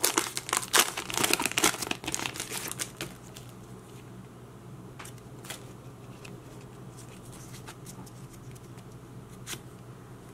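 Foil booster-pack wrapper crinkling and crackling as it is opened and the cards are pulled out, for about the first three seconds. After that come quieter, scattered light ticks of the trading cards being handled.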